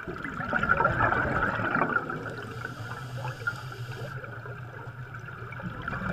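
Air bubbles rising underwater, heard as a steady bubbling rush, a little louder in the first two seconds.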